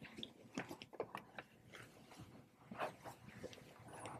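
Faint, scattered clicks and taps of a laptop being handled and set down on a granite countertop, a little louder about three seconds in.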